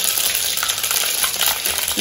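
Hot oil sizzling with fine crackles in a stainless steel pot as whole seeds fry in it for the tempering.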